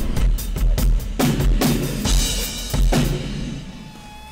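Rock drum kit being played: repeated bass drum and snare hits with cymbals, dying down near the end.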